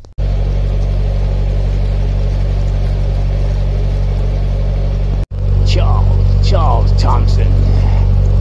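Narrowboat engine running steadily, a loud low drone. It breaks off for an instant about five seconds in and comes back slightly louder.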